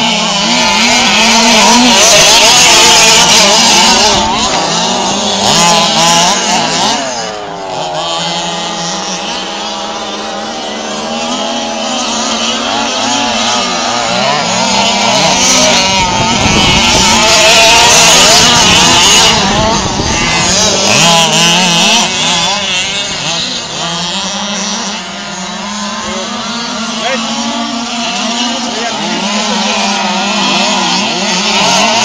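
Several 1/5-scale gas RC trucks' small two-stroke engines revving up and down together as they race on dirt, their pitches rising and falling against each other. The sound swells louder twice, a couple of seconds in and again around the middle.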